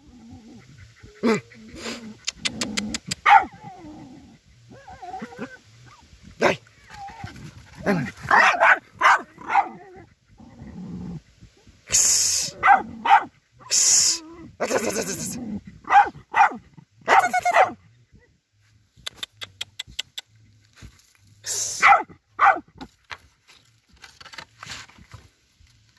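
German hunting terrier (Jagdterrier) barking and yipping in short bouts while working a fox earth, mixed with sharp scratching and clicking sounds.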